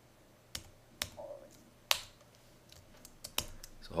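A few separate keystrokes on a computer keyboard: about six sharp clicks, spaced unevenly, as code is typed and run.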